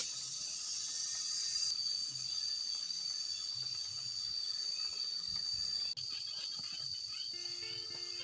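A steady, high-pitched drone of insects calling in the forest, unbroken and even in level.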